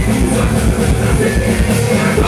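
Rock band playing loudly, with electric guitars and a drum kit keeping a steady beat.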